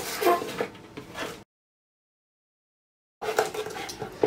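Chef's knife chopping iceberg lettuce on a wooden cutting board: crisp leaf crunches and knocks of the blade on the board. The sound drops out completely for under two seconds in the middle. Knife strokes on the board resume near the end.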